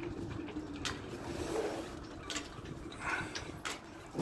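Quiet background noise with a faint steady hum and a few soft clicks.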